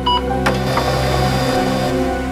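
Fax machine giving a short beep, then a click about half a second in and a steady whir as it feeds out a printed page, stopping near the end.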